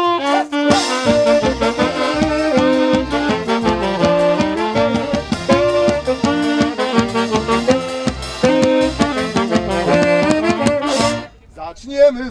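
Wedding folk band playing a lively instrumental interlude (ogrywka): saxophones carrying the tune with accordion over a steady bass-drum beat. The music breaks off for a moment near the end.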